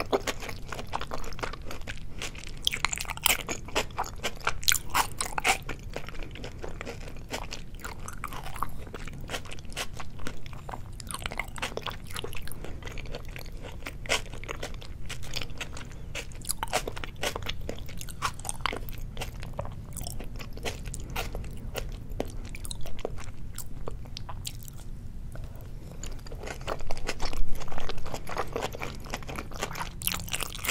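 Close-miked chewing of soy-sauce-marinated raw salmon sashimi: a steady stream of small wet clicks and smacks from the mouth, louder for a moment near the end.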